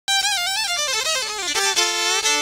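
3Dvarius Line 5-string electric violin bowed solo: a high note with vibrato opens a run of notes stepping downward, settling on a two-note double stop near the end.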